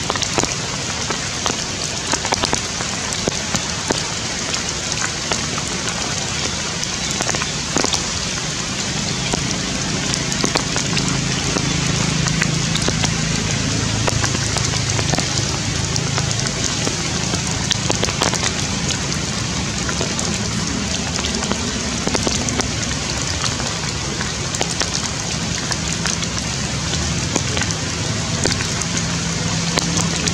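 Rain falling steadily on forest leaves and branches, a dense pattering of many small drop hits.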